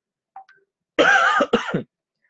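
A man coughing: one short voiced cough, clearing his throat, about a second in after a near-silent pause.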